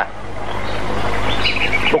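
Birds chirping a few times about a second and a half in, over a steady hiss and low hum.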